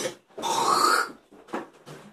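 A man's short, strained groan of pain from chilli burn, under a second long, followed near the end by a few faint short sounds.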